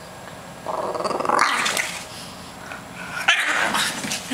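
French bulldog growling in two rough, pulsing bouts, the first starting under a second in and lasting about a second, the second near the end.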